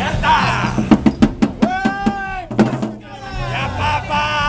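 Snare drums struck in a quick, uneven run of sharp hits, with a voice holding one long high shout through the middle of the run.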